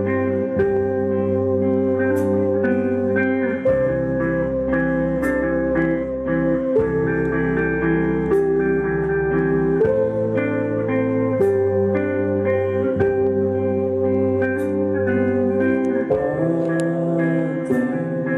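Live rock band playing an instrumental passage: electric guitars and bass holding sustained chords that change every few seconds, with a cymbal struck about every three seconds.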